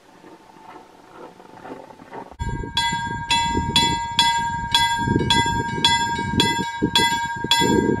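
Railway level-crossing warning bell ringing in a steady, even stroke of about three strikes a second. It is faint at first and suddenly loud about two seconds in, with a low rumble underneath. The bell is the crossing's warning that a train is approaching.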